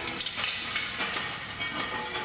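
Steady hissing noise with a few faint metallic clinks from the steel chains hanging off a loaded squat barbell as the bar shifts on the lifter's back.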